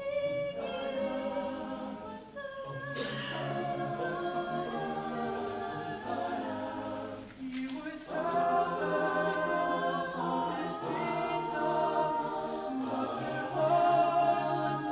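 Choir of carolers singing a cappella in sustained chords over a low bass line, with short breaks between phrases about two and a half and seven and a half seconds in, and fuller, louder singing from about eight seconds in.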